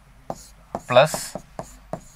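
A stylus tapping and scratching against the glass of an interactive display as a hand writes an equation: a string of short, sharp taps, about three a second.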